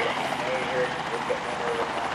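Faint voices in the background over a steady low hum and open-air noise.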